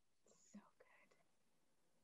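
Near silence: room tone, with a faint, brief murmur of a voice in the first second.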